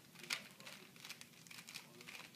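Rubik's cube being twisted rapidly by hand: a quick, irregular run of faint plastic clicks and rattles from the turning layers, the sharpest a little after the start.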